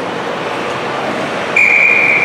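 Referee's whistle: one long steady blast starting about one and a half seconds in, over the general noise of an ice rink during play.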